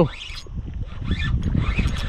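Spinning reel being cranked while fighting a hooked fish, with scattered faint clicks over a low, uneven rumble.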